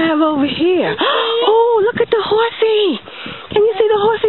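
A toddler's voice making long, wordless vocal sounds that wobble up and down in pitch, one drawn-out sound after another.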